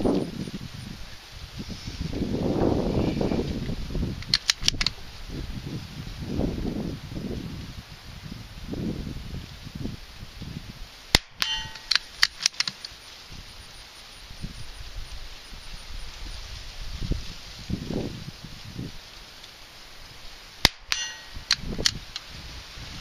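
Two sharp, short .22 rimfire rifle shots about nine and a half seconds apart, each followed by a few quick metallic clicks. Between them come rustling and handling knocks as the rifle is settled on a shooting bag.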